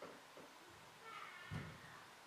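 Near silence: room tone, with a faint brief high sound about a second in and a soft low thump a moment later.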